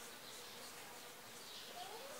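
Faint squeaking of a marker pen writing on a whiteboard, with a short rising squeak near the end.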